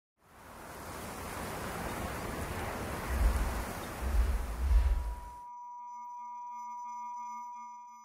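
Electronic intro sting for a title card. A rush of noise swells in with three deep booms, then cuts off about five seconds in to a held chord of pure electronic tones that fades away.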